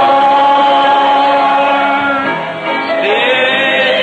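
Congregation singing a slow hymn in long held notes, the pitch changing twice.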